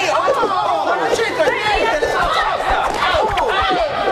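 Several people shouting over one another in a heated quarrel in Italian.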